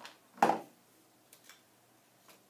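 Handling of plastic fruit fly trap parts: one sharp plastic knock about half a second in, then two faint ticks a second later.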